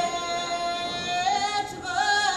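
Sevdalinka singing: one voice holds a long note, then slides up about halfway through into a wavering, ornamented turn.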